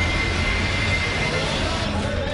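A steady, dense rushing noise with a low rumble, like a sound-design whoosh under a whip-pan transition, with a thin high steady tone over the first part that stops about a second and a half in.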